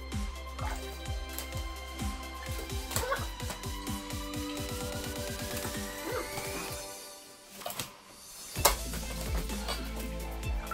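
Background music with a steady fast beat. A rising sweep builds through the middle, the beat drops out briefly, and it comes back in with a loud hit near the end.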